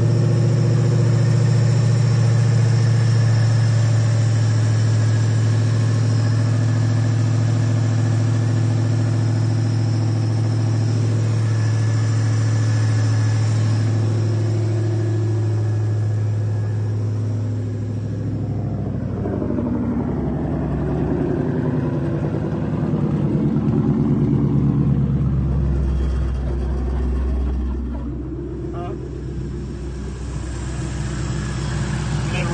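Roush-supercharged Ford 5.0 Coyote V8 idling with a steady drone. A little past halfway its pitch drops and the idle turns lower and less even.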